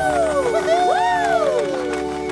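Cartoon voices cheering with two overlapping whoops that rise then fall in pitch, the second starting about half a second in, over steady background music.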